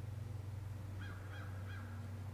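A crow cawing three times in quick succession, about a third of a second apart, in the second half, over a steady low hum.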